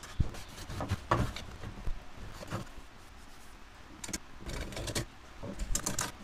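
Hand plane being pushed across a glued-up soft maple dovetail joint to plane it flat, several short strokes spaced a second or so apart.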